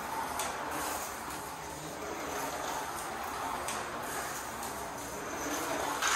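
A small slot car running laps on a plastic track: a steady whirring rush from its little electric motor and its wheels and pickup on the track. It starts at once and swells slightly near the end.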